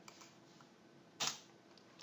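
A single keystroke on a computer keyboard, one short click, against near-silent room tone.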